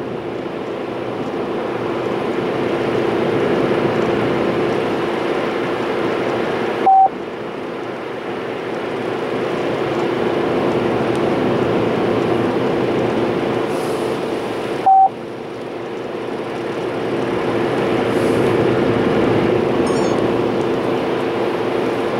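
Steady road and engine noise inside the cabin of a car at highway speed. Two short beeps about eight seconds apart come through the car's speakers, a call-on-hold tone on the OnStar line, and they are the loudest sounds.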